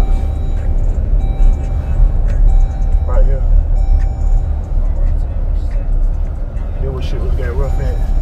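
A car driving slowly, its steady low road-and-engine rumble heard from inside the cabin. Over it runs background music with sustained high notes.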